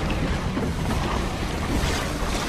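Steady rushing, wind-like roar with a deep rumble beneath: a film sound effect of palm trees and grass bursting up out of desert sand as an oasis springs up.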